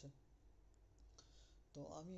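Near silence with a couple of faint clicks and a soft breath, then a voice starting again near the end.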